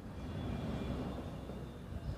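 Faint low rumble that swells slightly in the first second and then eases off.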